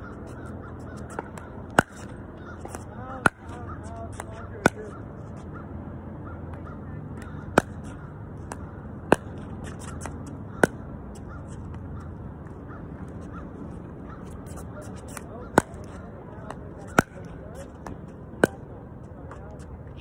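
A paddle hitting a plastic pickleball with sharp, hollow pops. There are three runs of three strikes, each strike about a second and a half apart, over a steady low background hum.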